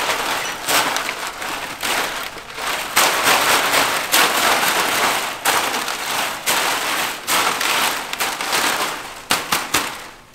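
Synthetic thatch shingles rustling and crackling as they are pushed and bent by hand: a dense crinkly rustle full of sharp clicks, thinning to a few separate clicks near the end.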